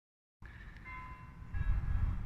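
Church bells ringing with several steady overlapping tones, mixed with wind rumbling on the microphone, which grows stronger about a second and a half in.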